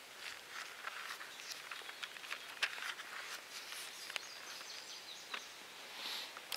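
Faint rustling and small clicks of Bible pages being leafed through while looking up a passage. A faint thin high tone runs for about a second and a half in the second half.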